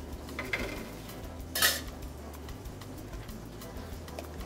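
Light kitchen clatter of dishware and utensils on a steel work counter, with a few small ticks and one brief, sharp clink about one and a half seconds in, over a low steady hum.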